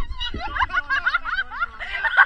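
A person laughing in a run of quick, high-pitched giggles that rise in pitch.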